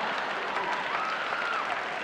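A theatre audience applauding, with laughter mixed in.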